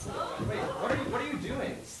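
Indistinct voices talking, no words clear enough to make out, with no other distinct sound.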